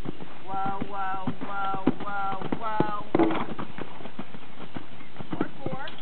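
Hoofbeats of a horse cantering on sand arena footing, irregular dull knocks with the strongest a little past two and three seconds in.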